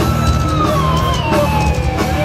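Metal band playing live at full volume: pounding drums and distorted guitars and bass, with one long held high note that rises slightly and then slowly sags in pitch.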